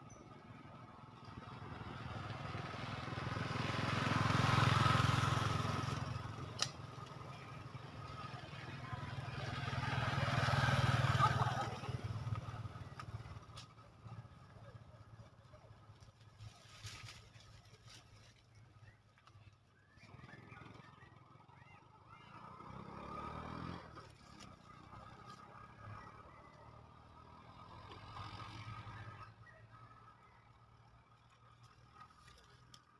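Motor vehicles passing by, each swelling and then fading away over several seconds, with a low engine hum. The two loudest passes come about 5 and 11 seconds in, and fainter ones follow later.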